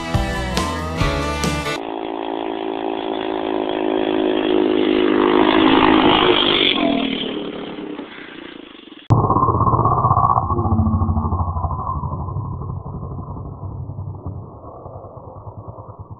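Music for the first two seconds, then a four-wheeler (ATV) engine running as it passes, growing louder and then fading. After a cut about nine seconds in, the engine is heard again, more muffled, fading as it moves away.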